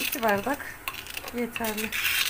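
A woman speaking in two short phrases, with a few light clinks of kitchen utensils against dishes between them.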